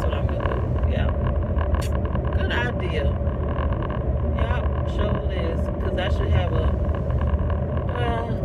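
Steady low rumble of a car's engine and tyres heard inside the cabin while driving, under a woman's voice.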